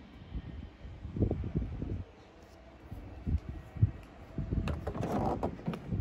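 Irregular low bumps of a hand-held phone being carried on foot. About five seconds in comes a louder, rustling noise.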